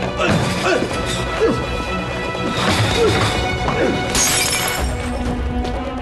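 Tense film score music under a scuffle, with a glass bottle smashing about four seconds in: a short, bright crash of breaking glass.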